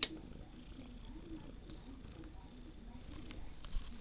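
Domestic cat purring close up, in slow breath-by-breath pulses, with a sharp click right at the start and a small knock near the end.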